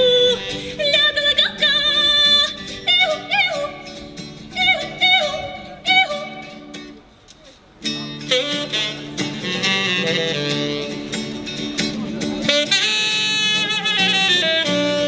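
A woman sings a Russian folk song in short phrases with sliding, falling notes over acoustic guitar. After a short drop in level about halfway, guitar and saxophone take over with a fuller instrumental passage.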